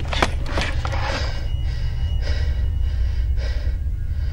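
A man breathing hard in gasps, about one breath a second, over a steady low rumble inside a car.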